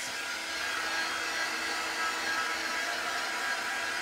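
Handheld craft heat gun blowing steadily while drying freshly applied chalk paste on a stencilled wooden frame.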